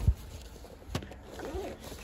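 Handling noise as a cardboard box is moved about over a backpack, with a low rumble and a single sharp tap about a second in.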